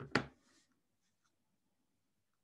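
A brief scuffing noise of handling close to the microphone, then faint room tone.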